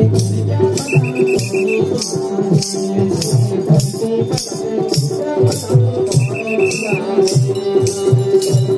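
Folk dance music with a steady shaken-rattle rhythm over low drum beats and a held droning note. A short high warbling note sounds twice, about a second in and again about six seconds in.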